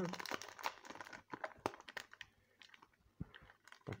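Faint crinkling and light clicks of a Pokémon card booster-pack wrapper and cards being handled. The crinkling is busiest in the first second or so, then thins to a few scattered ticks.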